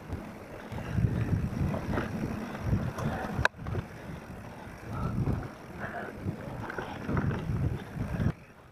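Mountain bike rolling over a bumpy dirt trail: uneven tyre rumble and bike rattle with wind buffeting the microphone, and one sharp click about halfway through.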